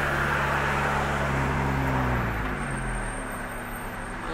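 Car engine and road noise heard from inside a moving car: a steady engine drone with a hum of tyres and wind, the drone easing off a little after two seconds in.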